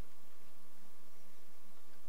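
Room tone: a faint, even background hiss with a thin, steady high hum, and no distinct sound event.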